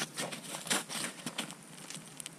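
Snow crunching under an ice angler's boots and knees, with clothing rustling, as he kneels at the ice hole while reeling in a hooked perch: a quick, irregular run of short crunches and clicks.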